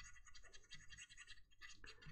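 Faint scratching of a flat brush dry-brushing paint onto a plastic model tank hull, a run of quick light strokes about four or five a second.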